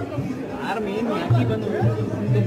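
Background music with a repeating low bass note, with voices talking or singing over it.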